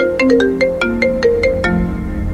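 Mobile phone ringtone playing a quick melody of struck, marimba-like notes, about five notes a second: an incoming call.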